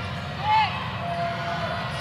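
Basketball arena ambience during live play: a steady low crowd rumble, with a brief squeak about half a second in and a longer steady squeak a second in, typical of sneakers on the hardwood court.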